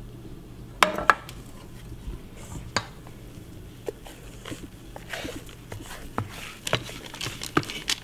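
Sharp clinks and knocks of a stainless steel mixing bowl and spatula, scattered irregularly, as thick sponge-cake batter is poured and scraped out into a metal springform pan.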